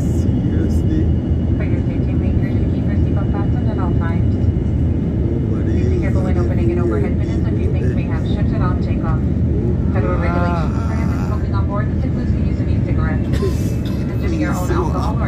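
Steady jet airliner cabin noise: a continuous low rumble of the turbofan engines and airflow, heard from a window seat beside the engine during climb-out shortly after takeoff.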